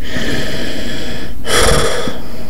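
A man breathing hard close to the microphone: one long breath, a brief break, then a shorter, louder breath about one and a half seconds in.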